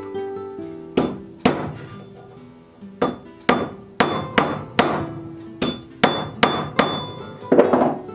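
Hammer striking the steel shank of an auger bit extension laid on a block of railroad iron, straightening a kink at its end. About a dozen sharp, ringing metal-on-metal blows: two pairs in the first few seconds, then a steady run of about two or three a second.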